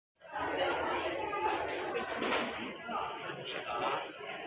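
Chatter of a waiting crowd on a railway platform: many voices talking over one another, none standing out.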